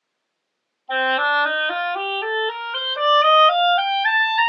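Selmer 1492B oboe, played with a handmade reed, starting about a second in on low B and running quickly upward note by note in a rising scale.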